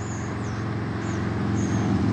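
A motor vehicle's engine running steadily, a low hum that grows gradually louder, with a few short, high, thin bird chirps over it.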